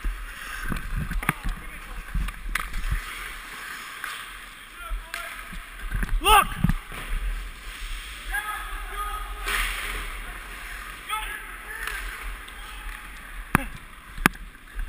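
Hockey skate blades scraping and carving on the ice, heard close up from a helmet-mounted camera, with wind rumbling on the microphone. A short shout comes about six seconds in, and a sharp click near the end.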